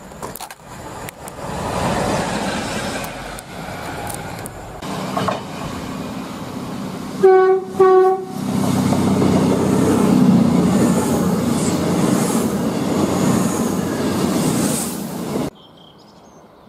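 Passenger train sounding its horn: two short toots on one note, about half a second apart. Each toot is followed by the steady rumble of the train running past, which cuts off suddenly near the end.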